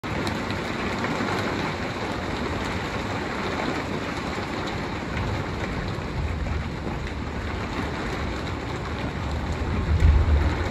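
Thunderstorm rain and wind making a steady rush, with low thunder rumbling about five seconds in and again near the end.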